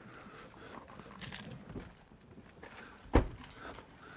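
Pickup truck's rear cab door slammed shut with one loud thud a little after three seconds in, preceded by soft rustling and faint jingling.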